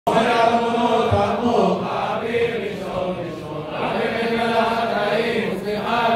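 A man singing a Jewish liturgical piyyut in Maqam Rast, a Middle Eastern mode, into a handheld microphone, in long held and ornamented phrases.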